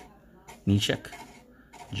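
Faint light clicks and rustle of glossy baseball cards being slid one by one through the hand, interrupted by one short spoken syllable about three quarters of a second in.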